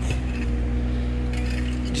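An engine running steadily, a low even drone with a constant hum.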